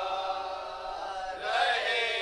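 Men's voices chanting a noha, a Shia lament for Husain, unaccompanied. They hold a sustained melodic line, and a new phrase begins about one and a half seconds in.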